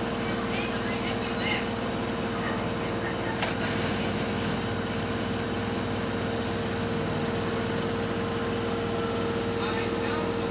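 LG direct-drive washing machine spinning its drum at a steady speed, with a steady hum and a steady whine from the motor.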